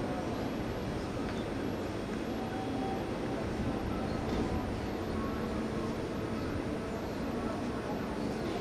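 Steady outdoor background rumble and hiss with faint, indistinct voices.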